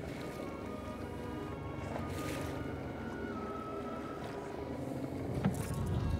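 Boat outboard motor running steadily at low speed as the boat is eased up toward the rocks.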